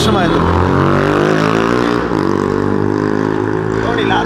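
A motor vehicle's engine running close by in street traffic, holding a steady pitch with a brief dip about halfway through.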